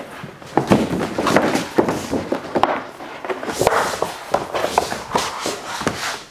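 A large sheet of carbon-fiber vinyl wrap film, with its backing still on, crinkling and rustling with many sharp crackles as it is handled and laid over a car's hood.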